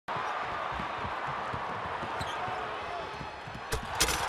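Basketball game audio: steady arena crowd noise with a basketball bouncing on the hardwood court, and a sharp bang near the end as a player dunks and hangs on the rim.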